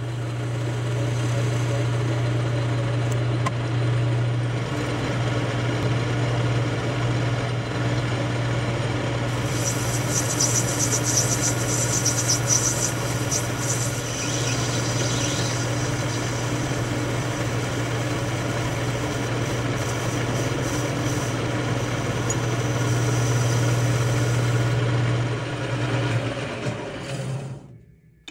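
Metal lathe running steadily while a carbide insert turns down a 360 free-machining brass part, with a steady low motor hum. A brighter, higher hiss joins for several seconds in the middle. The lathe winds down and stops just before the end.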